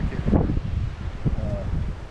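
Wind buffeting the microphone in a low rumble, with the rustle of a fabric bee jacket being picked up and handled.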